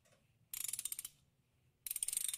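IRIMO socket ratchet wrench clicking: two quick runs of rapid pawl clicks, the first about half a second in, the second near the end.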